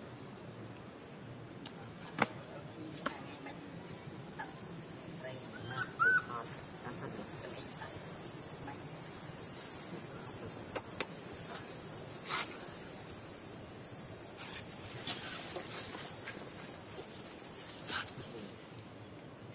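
Outdoor ambience dominated by insects: a steady high-pitched insect hiss comes in about four seconds in and holds, with scattered sharp clicks and a short rising-and-falling animal call about six seconds in.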